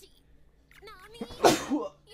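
A man sneezing once, loudly, about one and a half seconds in.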